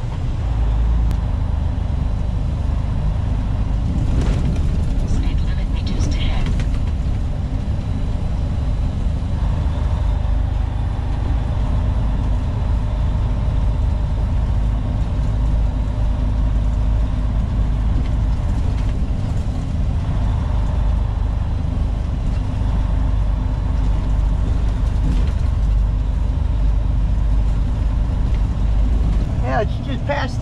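Semi truck's diesel engine and road noise heard from inside the cab while driving: a deep, steady rumble that holds at cruising speed.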